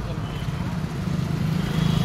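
A motor vehicle engine running steadily close by, growing louder from about a second in.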